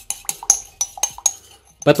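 Glass stirring rod clinking against the inside of a glass beaker as a liquid is stirred: quick, irregular clinks that ring briefly, stopping about one and a half seconds in.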